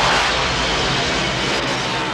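Loud, steady rushing roar of film sound effects as a shark smashes through a glass window.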